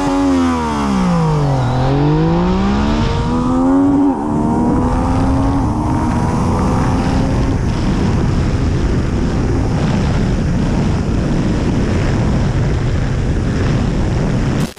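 Yamaha MT-09 three-cylinder engine launched at full throttle from a standstill: the revs dip as it pulls away, then climb, with several quick upshifts dropping the pitch in steps. After about six seconds, at high speed, a steady rush of wind noise on the microphone drowns out most of the engine.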